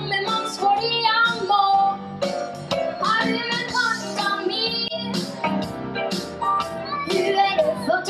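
Young girls singing a song into microphones over live band accompaniment, amplified through the stage PA.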